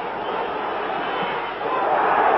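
Stadium crowd noise during a football match, a dense roar of many voices that swells louder near the end as play goes on in front of the goal.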